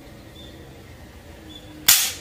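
Toy spring-powered air-cocking Walther P38 pistol firing a drum-shaped tsuzumi pellet: a single sharp shot near the end.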